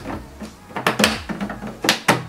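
Plastic filter cover of a BedJet 3 unit being pressed back into place: three short plastic clicks and knocks, the last near the end the loudest.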